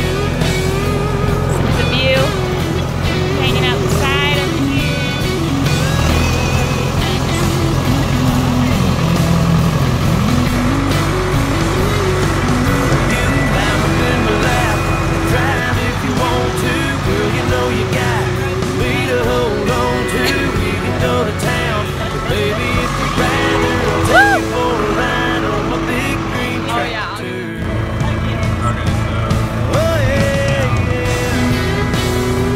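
A country song playing over the steady low hum of a tractor engine heard from inside the cab, with people's voices now and then; the sound breaks off briefly near the end and resumes.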